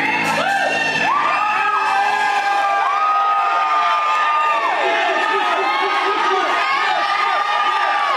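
Audience cheering and whooping, many voices at once, with one long held whoop in the middle.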